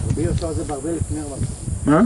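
A person talking, indistinct, over a steady background hiss.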